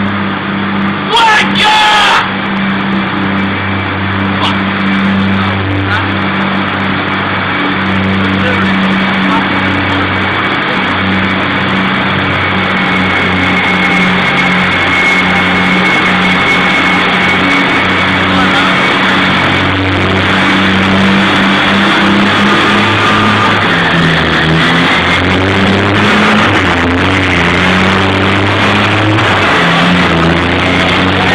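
A heavy vehicle engine running steadily with a low hum; its pitch drops and shifts about three-quarters of the way through.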